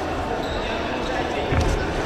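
Dull thuds from a boxing ring as two young boxers move on the canvas and trade punches, with a cluster of heavier thumps near the end as they close in, over voices in a large sports hall.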